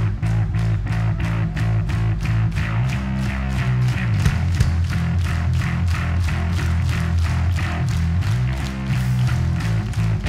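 Live rock band playing an instrumental passage: electric guitar and bass over a driving beat of about four strokes a second, with no singing.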